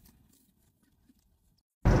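Near silence with only a faint low rumble, broken near the end by a sudden loud start of music with a voice.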